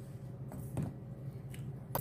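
Quiet room tone with a steady low hum and a few faint clicks and rustles of handling.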